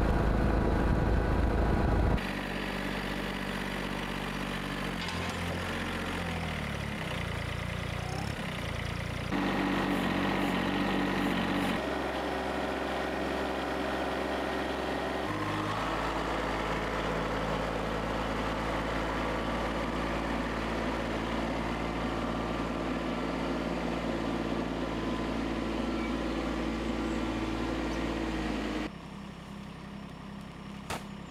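Motor-vehicle engines running across several edited shots. First a quad bike's engine runs loudly for about two seconds, then an Iseki TM3217 compact diesel tractor runs steadily, its note changing abruptly at each cut. About a second before the end the engine gives way to much quieter background.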